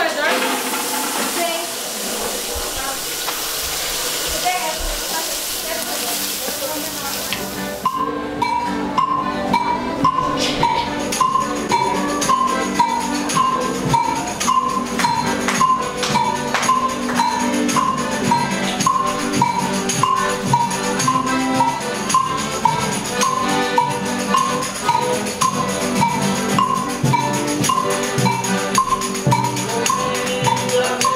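A steady hiss for the first several seconds. Then, from about eight seconds in, a Folia de Reis group playing in a steady rhythm: strummed guitar with tambourine, a short figure repeating over and over.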